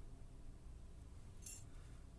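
A single faint, short metallic click about one and a half seconds in: a small lock pin clicking against metal as it is handled.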